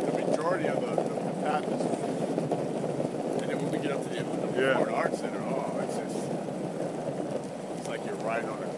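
Steady rushing noise of wind on the microphone mixed with wheels rolling over rough, cracked asphalt while riding, with a few faint muffled voice fragments in it.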